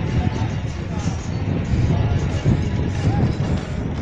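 Steady low rumble of a car driving slowly, with music and voices over it.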